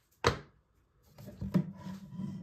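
A single sharp plastic clack about a quarter second in, then from about a second in continuous rubbing and scraping of plastic as an opened power-tool battery pack, its cell block exposed, is handled.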